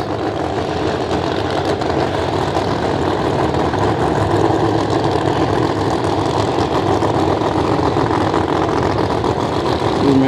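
Drag race cars' engines running steadily at idle, with no revving.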